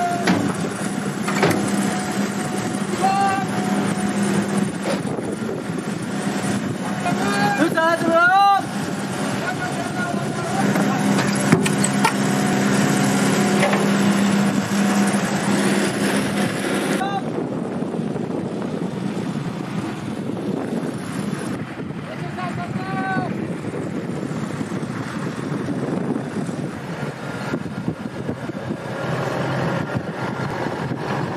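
An engine running steadily, with men's shouted calls over it now and then. About 17 seconds in, the sound cuts to a duller mix with less high end.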